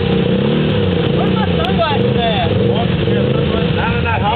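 Sport ATV engine running steadily under load as the quad churns through deep mud, with people's voices shouting and laughing over it.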